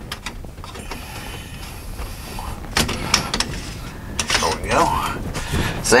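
A white plastic drain nut being screwed by hand onto a kitchen sink basket strainer: a few light clicks and scrapes of plastic on the threads, with a brief muttered voice a little before the end.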